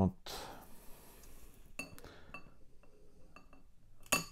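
A few light clicks and clinks of metal tweezers and pruning snips against a glass orchid pot while an orchid root is trimmed, several of the clinks ringing briefly.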